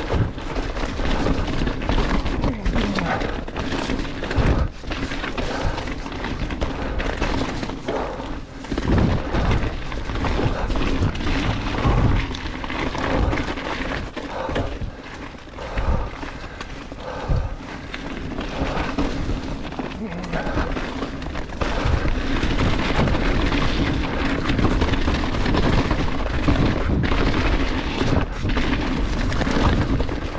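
Chromag Rootdown hardtail mountain bike ridden fast downhill on a dirt trail: tyres rolling over dirt and roots, with the frame and drivetrain rattling and knocking over bumps and wind on the microphone, a few sharper knocks standing out.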